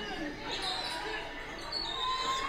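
Sounds of a basketball gym: faint, indistinct voices echoing in the hall, with thuds on the court floor like a ball bouncing.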